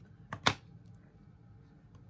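Two clicks close together about half a second in, the second sharper and louder: the plastic case of a Stampin' Up! ink pad being handled and set down on the stamping mat.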